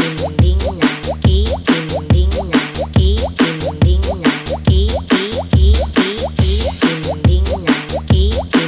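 Budots electronic dance remix: a steady thumping bass beat about twice a second under a repeating bubbly synth blip that slides upward in pitch, like a water-drop plop.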